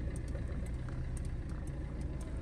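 Car engine running steadily with a low, even hum, heard from inside the car with the side window open.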